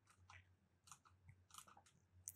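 Near silence, with a few faint, short clicks scattered through it.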